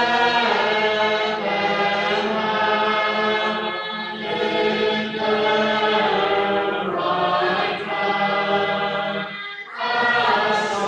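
A congregation singing a metrical psalm unaccompanied, in slow held notes, with a brief pause for breath between lines every few seconds.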